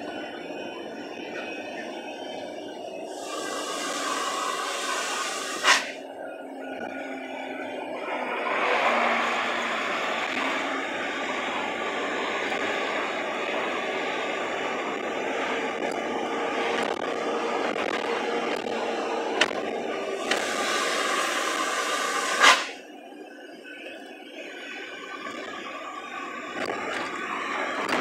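Truck cab noise while driving: steady engine and road noise. Twice, about three seconds in and again about twenty seconds in, a hiss comes in for two or three seconds and ends with a sharp click.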